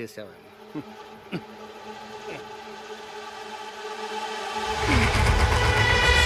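Sustained background-score drone of held tones that slowly swells, with a few short falling glides early on. A deep low rumble comes in about five seconds in and the music grows louder.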